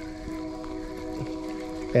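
Train horn sounding one long, steady chord.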